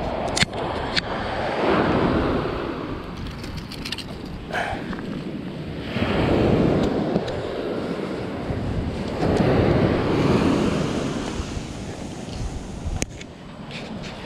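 Ocean surf washing up the beach, swelling and fading three times, with wind buffeting the microphone. A few short sharp clicks stand out over it.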